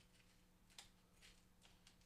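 Scissors cutting through vinyl sticker sheet in short strokes: about five faint, sharp snips in two seconds, over a low steady room hum.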